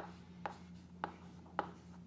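Chalk writing on a chalkboard: four faint, short strokes about half a second apart as letters are chalked.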